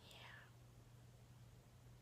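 Near silence: room tone with a low steady hum, and a faint breathy sound in the first half second.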